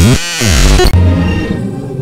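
Experimental electronic music: a loud, noisy synthesizer texture that breaks near the start into a brief warped, pitch-sweeping glitch, then thins out after about a second.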